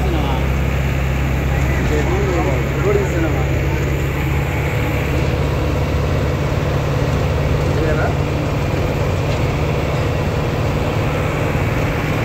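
Bus driving at road speed, heard from inside the cabin: a steady low drone of engine and road noise.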